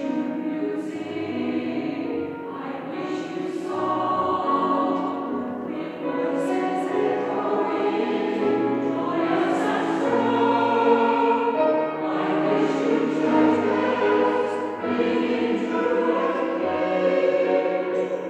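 Mixed choir singing a Christmas song with brass band accompaniment, in a large church.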